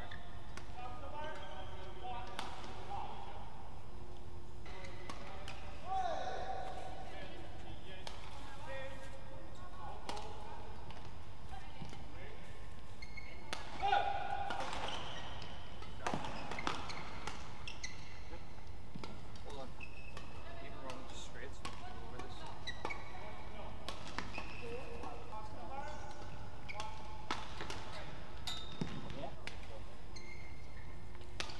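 Badminton rallies: racket strikes on the shuttlecock as short sharp clicks, shoe soles squeaking on the court floor, and voices in the hall between points. The loudest squeak comes about halfway through.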